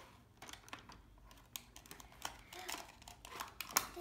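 Plastic toy toilet being handled and opened: irregular small clicks and taps of its plastic lid and parts against the cardboard box.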